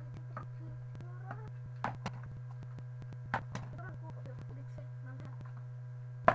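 A partly filled plastic soda bottle being flipped and landing on a wooden tabletop: two quick double knocks, about two seconds in and again about three and a half seconds in, over a steady low hum.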